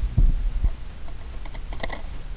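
Steady low electrical hum from a record player after the 45 rpm record has finished, with two low thumps early on and a quick run of light clicks near the end.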